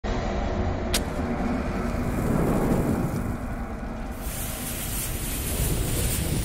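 Logo-intro sound effects: a steady low rumble with a sharp hit about a second in, then the hiss of a lit bomb fuse from about four seconds in.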